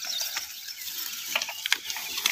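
Irregular clicks and crackling rustle of tall grass as a yoked pair of bullocks drag a plough through it, with a few sharper ticks in the second half.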